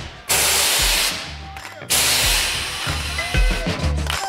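Air suspension on a pickup truck, worked by a Bluetooth remote, hissing loudly as air rushes through its electrovalves. There are two main bursts, one just after the start and one about two seconds in, each fading over about a second. Music plays underneath.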